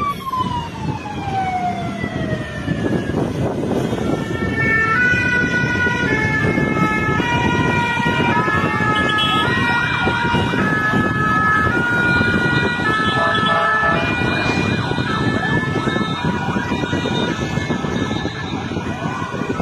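Fire engine siren: a falling wail in the first few seconds, then a two-tone siren switching between high and low notes from about four seconds in, over loud background noise.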